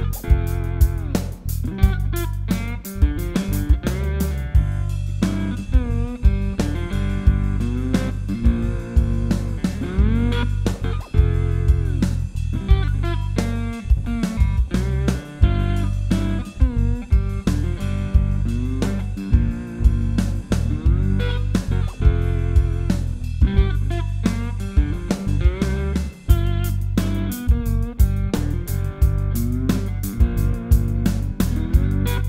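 Lap steel guitar tuned to open G, played with a slide over a backing jam track. The notes glide up and down over a steady beat and bass line.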